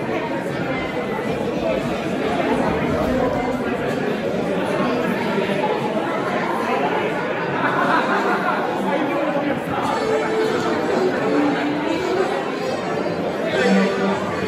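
Many people chatting at once in a large hall, a steady hubbub of overlapping voices.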